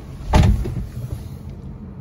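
A single heavy, low thump about a third of a second in, over a steady low hum.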